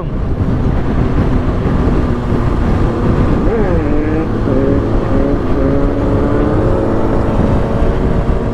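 Suzuki GSX-R sportbike's inline-four engine running steadily at highway cruising speed, heard from the rider's seat with heavy wind rumble on the microphone. About three and a half seconds in the engine's pitch briefly drops and then climbs back.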